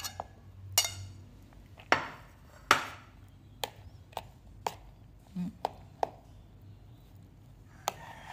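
Metal spoon tapping and scraping against a bowl while stirring cooked mung beans into sticky flattened green rice: sharp, irregular clinks and knocks, with the loudest tap a little before three seconds in.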